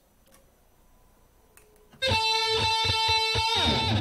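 Recorded electric guitar played back from Pro Tools, two takes double-tracked and panned hard left and right. After about two seconds of near quiet, a loud sustained chord with quick picked strokes comes in suddenly, then slides down in pitch and cuts off at the end.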